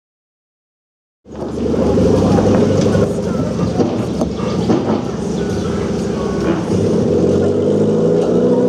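Fiat Seicento rally car's engine running steadily at low revs as the car rolls slowly forward, cutting in abruptly about a second in.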